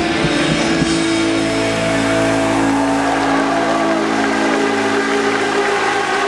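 Live rock band with distorted electric guitars and drums: the drum strokes stop about a second in and the band's chord is held and left ringing in a steady drone, like the end of a song.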